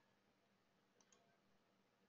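Near silence, with two faint computer mouse clicks close together about a second in.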